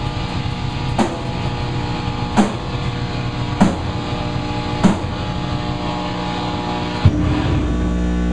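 Live band playing a slow, heavy section: loud electric guitar and bass holding a sustained riff, with a drum and cymbal hit about every second and a quarter. A final hit comes about seven seconds in, after which the amplifiers hum on.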